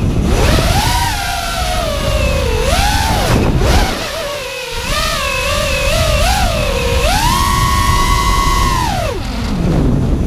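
Brushless motors of an FPV racing quadcopter (Scorpion 2204 2300KV) spinning DAL T5040 V2 tri-blade props, heard from the onboard camera: a whine that rises and falls with the throttle, drops away briefly around four seconds in, then is held high for about two seconds before falling near the end. Wind rushes on the microphone underneath.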